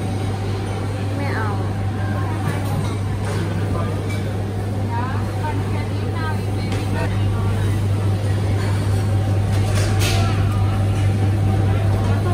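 Busy shop ambience: faint voices of other shoppers over a steady, loud low hum.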